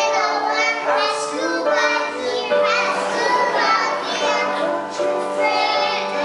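A group of young children singing together over a steady instrumental accompaniment.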